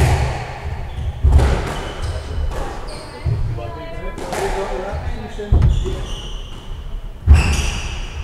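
Squash rally: the ball is struck by rackets and smacks off the walls in sharp, echoing cracks every second or so. Court shoes squeak briefly on the wooden floor between the shots.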